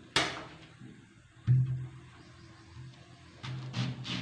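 A knife and a banana stalk core knocking on a wooden chopping board: a sharp click just after the start, a duller, louder knock about a second and a half in, then softer handling sounds near the end.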